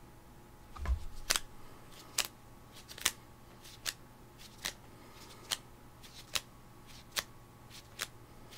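A low thump about a second in, then a run of sharp clicks at a steady beat, a little more than one a second.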